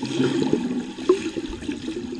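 Churning water and bubbles from a swimmer's arm strokes passing close by, heard muffled underwater.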